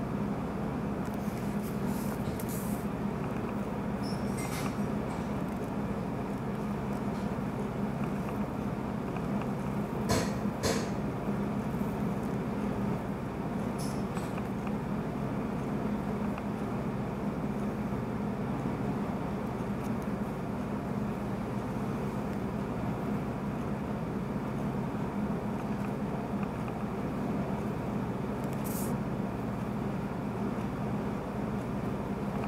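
Air conditioner running to heat the room, a steady, noisy hum and whoosh. Over it come a few faint, brief scratchy sounds, the loudest about ten seconds in.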